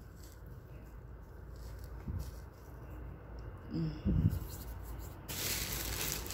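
Low steady background rumble with a person's brief murmured "mm" about four seconds in. Near the end a steady hiss sets in suddenly.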